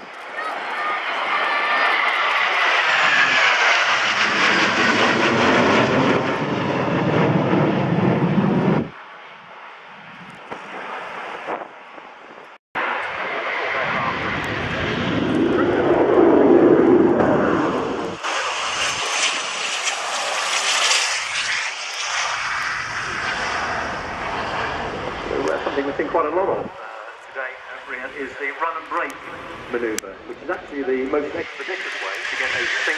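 Jet engine noise from four fighter jets flying over in formation, fading out about nine seconds in. After a short quieter stretch, a Eurofighter Typhoon's twin jet engines on its takeoff run and climb-out, loudest around the middle and trailing off toward the end.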